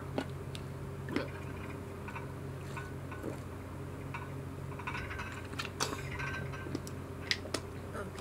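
A person drinking from a plastic water bottle, with scattered small clicks from handling it, over a steady low electrical hum.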